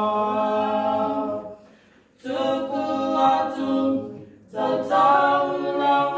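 A small group of voices singing together unaccompanied, in held phrases with two short pauses for breath, one about two seconds in and another just past four seconds.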